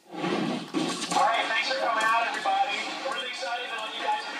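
Soundtrack of a video played over a hall's loudspeakers: a voice speaking, with some music underneath, starting suddenly.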